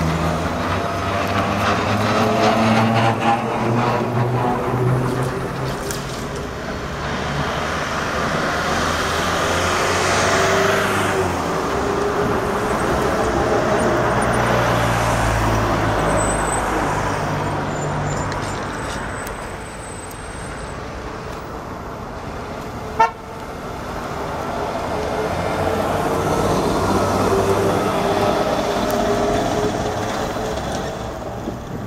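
Trolleybuses and street traffic passing, with the electric traction motors whining in gliding pitches that rise and fall as the trolleybuses move off and go by. A single sharp knock sounds about three-quarters of the way through.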